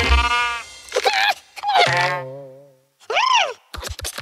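A cartoon character's wordless vocal sounds: a few short cries, a long wavering moan falling in pitch, then a brief rising-and-falling whoop. A music beat starts near the end.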